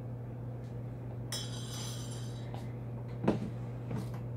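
A serving spoon clinking against a stainless steel soup pot and a bowl as soup is ladled out. There is a ringing clink a little after a second in and a sharp knock near the end, over a steady low hum.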